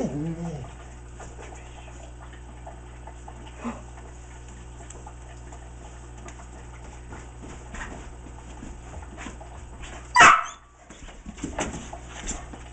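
A dog gives a short whine at the start, its pitch curving up and down. About ten seconds in comes a single loud, sharp sound.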